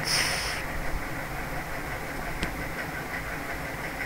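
Steady background hiss with a faint click about two and a half seconds in.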